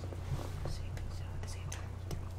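Faint whispering and small scattered noises over a steady low hum.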